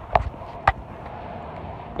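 Footsteps at the end of a short run: a couple of sharp steps in the first second, then only steady low background noise.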